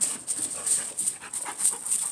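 German Shepherd panting close by, a run of short, quick breaths.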